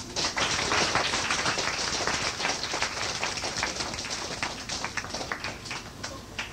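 Audience applauding at the end of a song, full at first and then thinning out to scattered claps.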